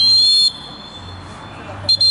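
Referee's whistle: a long, loud blast that stops about half a second in, then a second short blast near the end.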